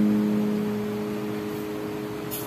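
Acoustic guitar with a capo, a strummed chord held and ringing out, slowly fading away.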